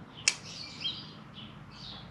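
A single sharp metallic click about a quarter of a second in, as a small steel bolt snaps onto a magnetic sump plug. Birds chirp in the background throughout.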